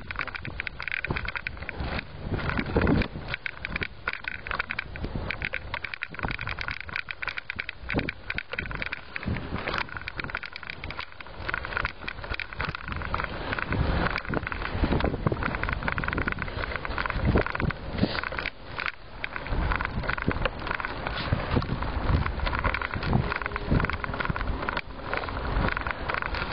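A vehicle rolling down a steep brick-paved street: the tyres rumble over the bricks with a steady run of clicks, rattles and jolts.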